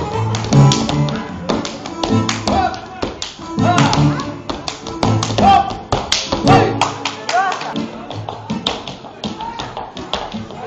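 A dancer's rapid hand slaps on his legs and shoes and stamps on a wooden floor, a fast irregular run of sharp smacks that thins out in the last few seconds. The slaps run over live keyboard music and a singing voice.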